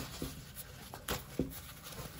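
Soft rustling and rubbing of fresh green corn husks being handled and peeled by hand, with a few light knocks, one near the start and two a little after a second in.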